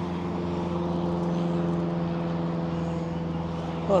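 A steady mechanical drone, like a motor or engine running, holding one unchanging pitch, over a wash of outdoor background noise.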